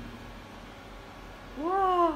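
A single short pitched squeal, about half a second long near the end, rising and then falling in pitch.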